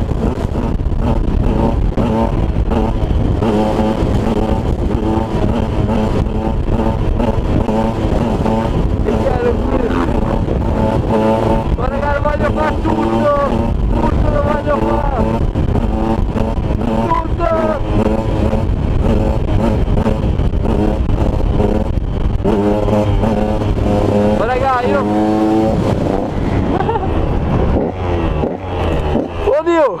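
KTM 125 two-stroke motard engine revving hard while the bike is held up on its back wheel in wheelies. Its pitch climbs and drops again and again as the throttle is worked.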